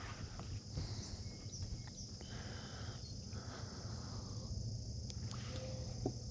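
Quiet outdoor ambience on open water: a faint steady hum and hiss with a few soft clicks.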